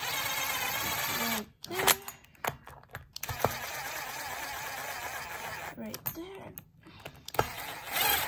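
Cordless impact driver running in two short bursts as it tightens disc brake rotor bolts, with a few knocks of the tool and socket between them.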